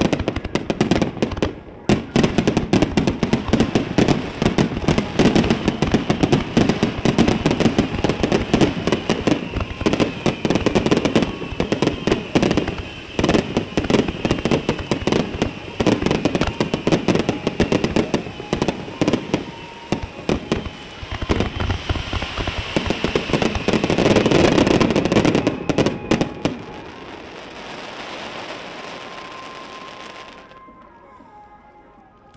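Fireworks display: a dense, unbroken barrage of rapid bangs and crackles, loudest just before it stops suddenly about 26 seconds in, leaving a fading echo.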